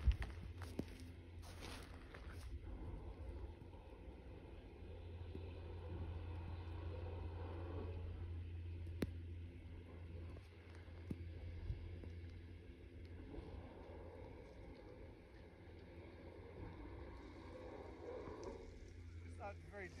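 Skis sliding and scraping over snow, the noise swelling and fading with the turns, over a steady low wind rumble on the microphone.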